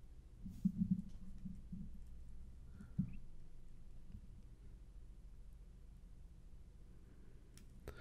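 Faint trail-camera audio playing back through speakers: a few soft low thuds in the first two seconds and a sharper knock about three seconds in, then almost nothing.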